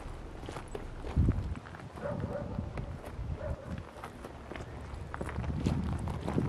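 Footsteps on loose rock and gravel, uneven and irregular, with a heavier thump about a second in.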